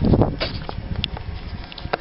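Handling noise from a handheld camera being moved about: a low bump at the start, then scattered light clicks and rustling.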